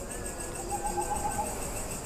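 Faint night insect trill, a steady high thin buzz, with a soft wavering call about a second in.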